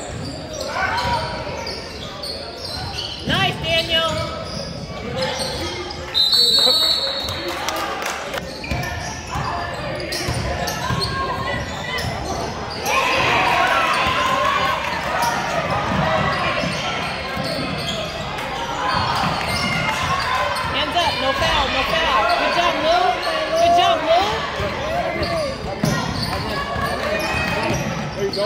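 Basketball game sounds in an echoing gym: a ball bouncing on the hardwood floor among many short knocks, with voices of players and spectators calling out. The voices grow busier and louder about halfway through.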